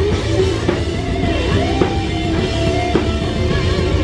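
Live rock band playing loud, with distorted electric guitar and drum kit with cymbal hits. A wavering, bending melody line sits on top. The camera recording sounds muffled.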